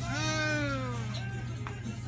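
A single drawn-out vocal call, about a second long, rising briefly and then falling in pitch.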